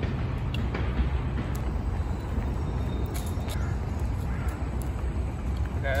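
Steady low rumble of wind on a phone microphone while riding over asphalt, with a few faint clicks.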